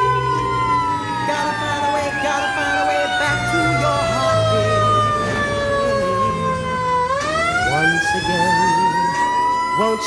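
A siren wailing: its pitch slides slowly down for about seven seconds, then climbs back up over the last three, the pattern of a siren winding down and spinning up again.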